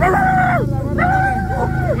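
A dog howling twice: two long, drawn-out, high calls, each falling in pitch at its end, over a motorcycle engine running steadily.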